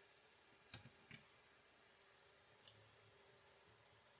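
Near silence broken by a few faint clicks: two small ones about a second in and a sharper single click past the halfway point.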